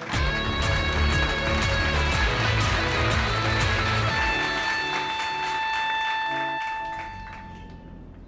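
Break music with a heavy bass line and a steady beat. The bass drops out about halfway through, leaving a held high note, and the music fades out near the end.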